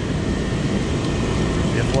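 Steady rushing roar of water pouring over a low-head dam spillway.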